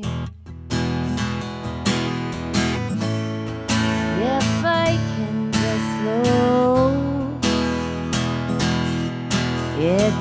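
Acoustic guitar strummed in a steady rhythm, with a woman's voice singing long, sliding notes over it from about four seconds in and again near the end.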